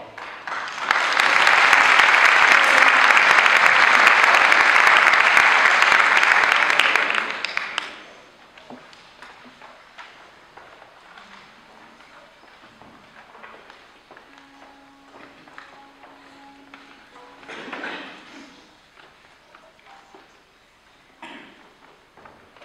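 Audience applauding in a hall for about seven seconds, then the applause stops and the room goes quiet, with faint rustling and small knocks and a brief held note near the middle.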